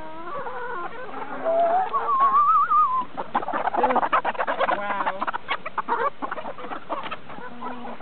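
A flock of brown hens clucking and calling over hornworms tossed among them, with a long wavering call about two seconds in and a scatter of short clicks through the middle.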